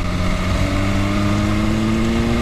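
BMW S1000RR's inline-four engine running at a steady, moderate throttle while riding, its pitch rising slowly and evenly as the revs build.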